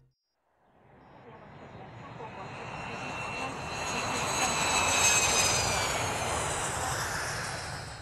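Jet airliner taking off: engine noise builds from silence to a peak about five seconds in, with high whining tones that slowly fall in pitch as it passes, then eases off.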